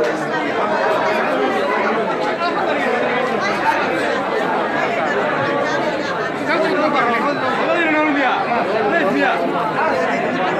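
Crowd chatter: many people talking at once, voices overlapping without a break.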